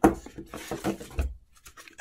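Cardboard packaging being handled as a card envelope is lifted out of a box: a sharp tap at the start, then scraping and rustling of card, with a soft low thud a little past one second.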